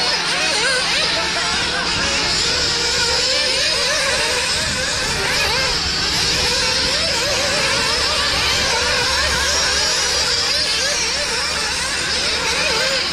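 Several small nitro-engined RC cars racing at once, their engines revving up and dropping back over and over as they go round the circuit, the overlapping pitches rising and falling continually.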